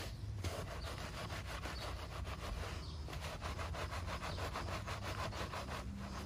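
Long-bristled wheel brush scrubbing back and forth inside the spokes and barrel of a soapy alloy wheel: a fast, even rasp of bristles on wet metal, several strokes a second, pausing briefly near the start and about three seconds in.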